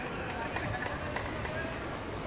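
Unclear voices of people talking around an outdoor tennis court, with a run of sharp, irregular taps, about three a second.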